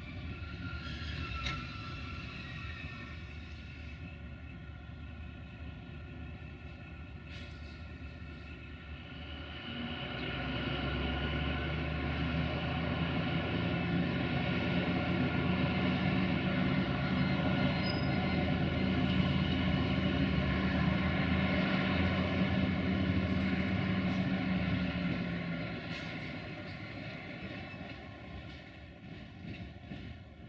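M62 (class 628) diesel locomotive's two-stroke V12 engine running while the locomotive shunts. The engine note swells about a third of the way in, stays loud for some fifteen seconds, then eases back near the end.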